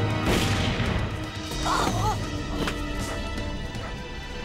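Tense chase music from a TV drama soundtrack, with a sharp crash just after the start and two shorter hits a little before three seconds in.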